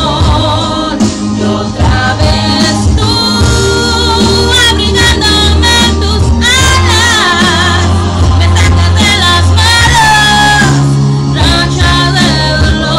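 A woman singing a slow song over a loud recorded backing track, with long held notes, some wavering with vibrato, above steady bass notes.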